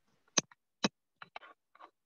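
A few sharp, irregular clicks or taps, two distinct ones about half a second apart followed by a quicker cluster of fainter ones.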